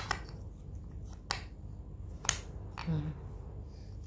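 Wooden letter pieces clicking and tapping against a wooden alphabet puzzle board as a piece is fitted into its slot: several sharp, separate taps.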